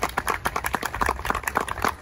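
Applause from a small crowd: many hands clapping at once, dense and uneven.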